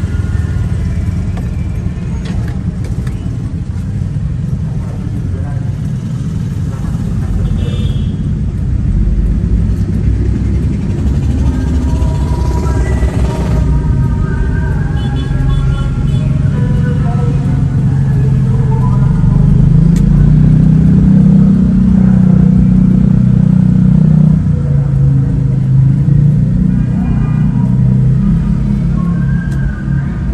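Car engine and road rumble in slow, stop-and-go city traffic, swelling louder about two-thirds of the way through, with a voice or singing over it.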